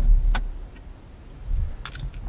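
Chevy Colorado pickup idling, heard from inside the cab: a steady low hum with two sharp clicks near the start. The hum fades out about half a second in, leaving a few soft knocks and a click near the end.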